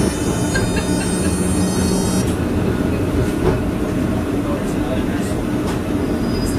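Blackpool Centenary tram running, heard from inside the saloon: a steady rumble of wheels on rail with a low motor hum. A high thin whine over it stops suddenly about two seconds in.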